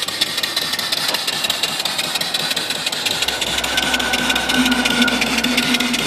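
Shop-built single-cylinder vertical steam engine, 3-inch bore and 3-inch stroke, running steadily under steam with a rapid, even beat while it belt-drives an automotive alternator. A steady tone and low hum join about halfway through.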